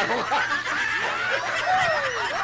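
A woman laughing, a continuous run of high giggles that rise and fall in pitch.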